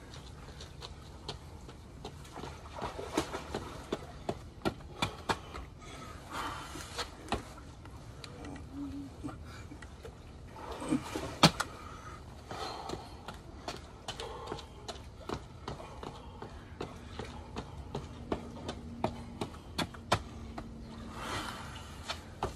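Burpees and push-ups on push-up handles on a concrete patio: scattered light knocks and taps of the handles and body movement, the sharpest knock about halfway through.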